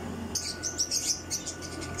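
Small birds chirping: a quick run of short, high-pitched notes that starts about a third of a second in and keeps going.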